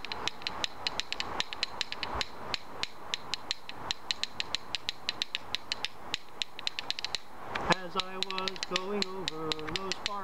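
A pair of rhythm bones cut from buffalo ribs, held in one hand and clacked together by twisting the wrist: a steady run of sharp clicks, about three or four a second. A man's voice joins over the clicking near the end.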